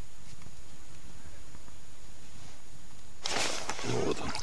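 A low steady rumble, then about three seconds in a sudden burst of rustling and clicks as a perch is hauled up through an ice-fishing hole by hand on the line.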